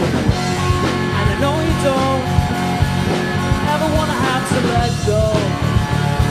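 Rock band playing live: electric guitar, bass guitar and drum kit together, with steady drum hits and a melody line that bends and slides in pitch.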